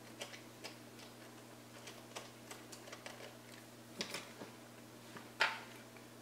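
Light, irregular clicks and taps of small plastic and metal parts being handled on a drone's body, with a sharper clack about five and a half seconds in. A faint steady low hum runs underneath.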